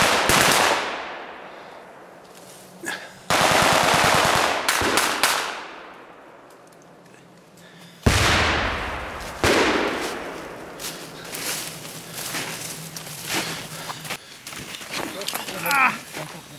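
Automatic gunfire from blank-firing weapons in a forest battle: a burst at the start, a longer rattling burst a few seconds in, then single heavy shots from about eight seconds. Each shot echoes away through the trees, and scattered lighter shots follow.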